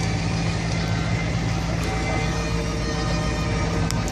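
Diesel engine of a 1992 Ford Econoline ambulance idling steadily, heard from inside the cab, still warming up after a cold start.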